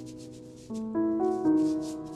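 Soft piano background music, with new notes struck about 0.7, 1.0 and 1.5 seconds in, over quick, soft rubbing strokes several times a second.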